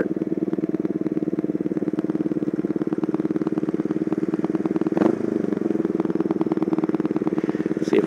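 Kawasaki Vulcan 500's parallel-twin engine running steadily at low revs as the bike rolls up to a stop, its twin carburetors freshly cleaned and rebuilt. The sound changes briefly about five seconds in.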